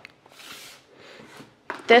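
Faint rustling as plastic food containers are handled on a kitchen counter. A woman starts speaking near the end.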